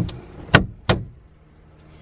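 Overhead wooden cabinet doors being pushed shut, making three sharp knocks within the first second, the loudest about half a second in.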